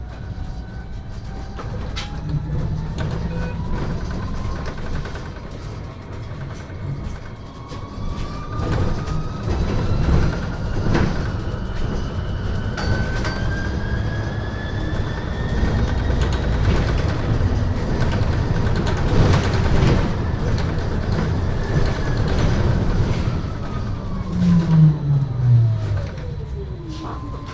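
MAN Lion's City Hybrid bus heard from inside, on the move: the electric drive's whine rises slowly in pitch as the bus gathers speed, then falls as it slows near the end. Under it runs a steady low rumble, and a louder low hum drops in pitch just before the end.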